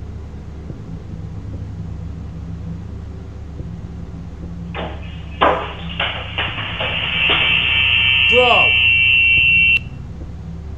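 A run of sharp bangs and knocks as the upper kitchen cabinet doors come open, followed by a loud, steady high-pitched tone that holds for about two and a half seconds and then cuts off suddenly.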